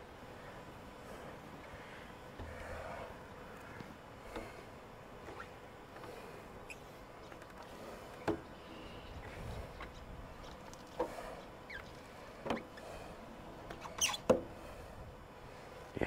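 Faint scattered squeaks and taps of a squeegee working over wet window glass, with a few sharper clicks near the end.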